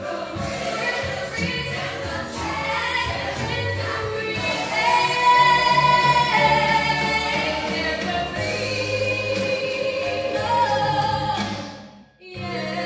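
A young female singer singing a song over backing music, with sustained, drawn-out notes; a long held note in the middle is the loudest part, and the sound fades out near the end.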